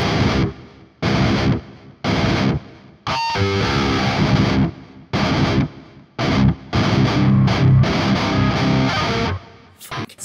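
Valiant Jupiter electric guitar through heavy distortion, playing a metalcore breakdown: chugs broken by short stops, about one hit a second at first, then longer runs of chugging that stop shortly before the end.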